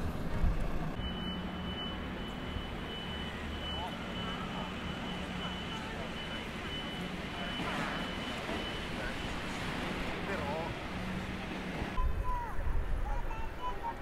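Outdoor ambience of a city square: a steady murmur of distant traffic and passers-by's voices, with a faint high steady whine through most of it. About two seconds before the end a louder low rumble comes in.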